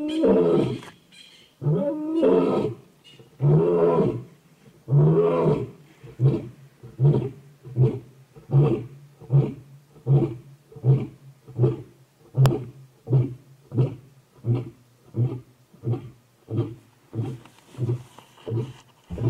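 Lion roaring bout: four long, deep roars, then a run of about twenty short grunting calls, nearly two a second, that slowly fade.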